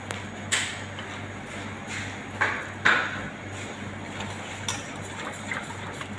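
Wire whisk stirring thick chocolate ganache in a stainless steel pot, its wires clinking against the pot a few times, loudest about half a second in and again near the middle. A steady low hum runs underneath.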